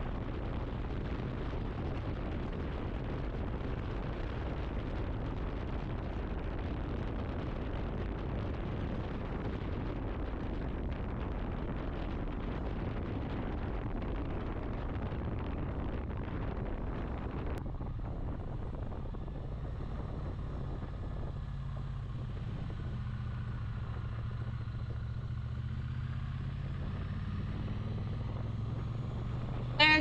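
Triumph Speed Twin 900's parallel-twin engine running at a steady cruise, under a thick rush of wind noise. About two-thirds of the way through the wind noise drops away suddenly, leaving the engine's low drone plainer and steadier.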